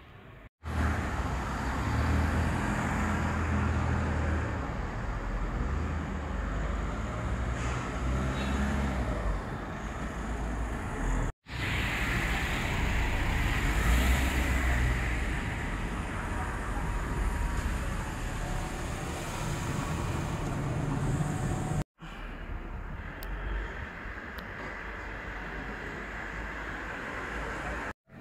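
Town street ambience with car traffic noise: a steady noisy rumble that swells and fades as vehicles pass. It breaks off abruptly twice and starts again.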